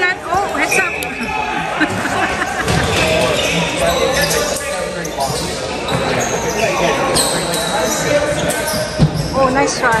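Box lacrosse play on a concrete arena floor: sticks and ball knocking and bouncing again and again, with players shouting in the hall.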